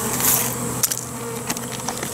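A honeybee swarm buzzing steadily close by, with a few sharp clicks a little under a second in and again about halfway through.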